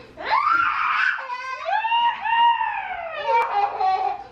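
A young child squealing in long, high-pitched, gliding cries, two big ones in the first three seconds, with shorter squeals after.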